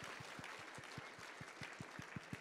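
Audience applauding, a steady spatter of many hand claps.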